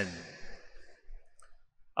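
A pause in a man's speech: the echo of his last word fades away in a large reverberant church, then a few faint small clicks are heard before the voice starts again.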